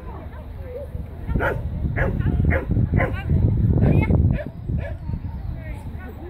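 A dog barking repeatedly, about two barks a second, as it runs an agility course, with a low rumble underneath.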